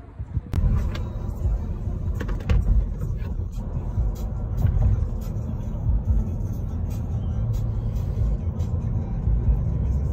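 Road and wind noise inside a moving car on an expressway: a loud, heavy low rumble that starts about half a second in, with scattered short knocks.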